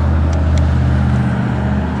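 A steady low engine hum, like a motor idling, holding one even pitch.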